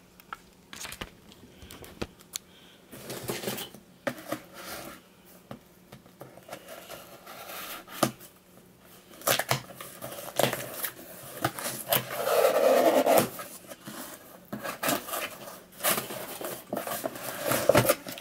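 A cardboard shipping box being cut and opened by hand: tape slit, flaps pulled back and cardboard handled, with scraping, rustling and irregular sharp clicks and knocks. A longer rasping stretch about twelve seconds in is the loudest part.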